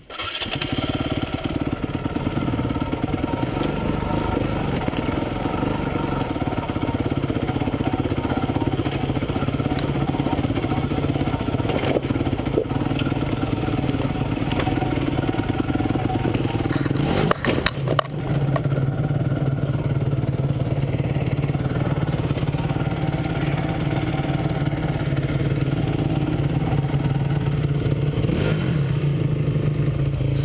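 Honda CRF dirt bike's four-stroke single-cylinder engine running at a steady low pitch, cutting in abruptly at the start. A little past halfway it breaks briefly with a few knocks, then runs somewhat louder.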